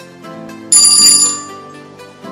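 Background music with a bright, ringing bell-like sound effect striking suddenly about two-thirds of a second in and fading over the next second, the signal that the quiz timer has run out.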